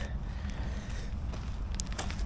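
A steady low rumble, with a plastic bag crinkling faintly in the hand a few times near the end.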